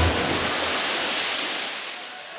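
A loud rushing hiss of noise that sets in with a sudden hit at the start and fades away over about two seconds.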